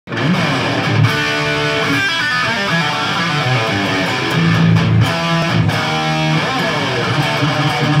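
Tokai LC169S Les Paul Custom-style electric guitar with humbucking pickups, played through a Marshall JVM amplifier: a phrase of sustained single notes and chords, with a pitch glide about six seconds in.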